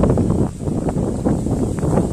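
Wind buffeting the microphone, a loud, low rumble of wind noise with no speech over it, heavy enough that the audio may be distorting.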